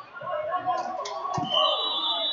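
Indistinct voices of people talking in a large gym, with a few short sharp taps near the middle and a high, steady tone that comes in past halfway.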